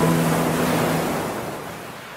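Ocean waves washing on a shore, a sound effect that slowly fades out, while the last held guitar notes of a short music sting die away about a second in.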